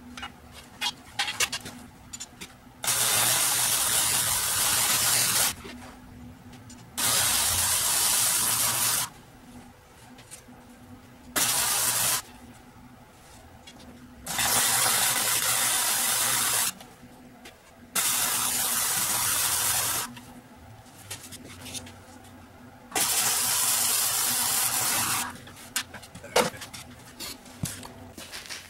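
Electric welder laying weld beads on metal tabs, heard as six separate runs of steady loud hiss, each one to three seconds long, with pauses and small clicks of handling between. These are the fill-in welds after the tabs were tack-welded in place.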